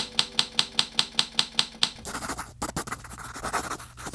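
Logo sound effects: a run of evenly spaced typewriter-like key clicks, about five a second, as the letters type on, giving way about two seconds in to a scratchy pen-on-paper writing sound as a handwritten script is drawn.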